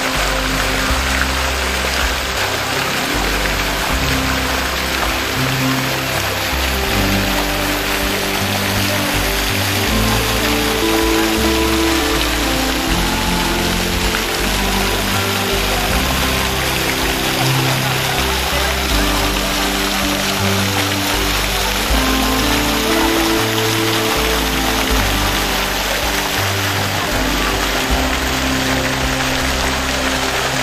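Water from a public fountain's jets splashing steadily into its basin, under background music with slow, held notes.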